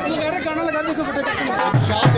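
Several voices chattering over one another, with music playing underneath and a drum beat near the end.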